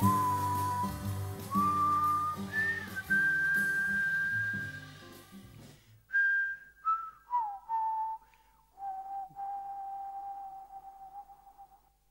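A whistled melody of long held notes over acoustic guitar and band accompaniment. About six seconds in, the band stops and the whistling carries on alone, ending on a long held low note that fades out.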